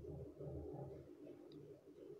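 Faint bird calling, low and quiet.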